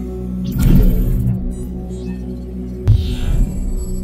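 Logo intro music: a steady low droning hum, with a whoosh swelling up about half a second in and a deep, sharp hit just before three seconds in.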